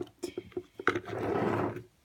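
Small plastic toy piece rolling across a tabletop: a few light clicks as it is pushed off, then a rolling rumble of about a second that stops just before the end.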